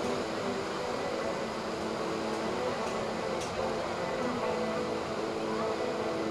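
Steady surf and wind noise with the drone of distant jet boat engines, several held tones that shift slightly in pitch.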